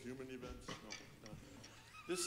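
Faint voices with no clear words: a short voiced sound in the first half second, then low murmuring.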